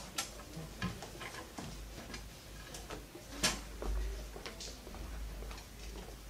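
Classroom room tone while students write: scattered small clicks and taps from pens, paper and desks at irregular intervals, with one sharper click about three and a half seconds in, over a low steady hum.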